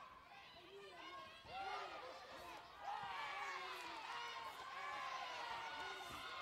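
Spectators' voices shouting and calling out to the fighters, many overlapping at once in a large hall.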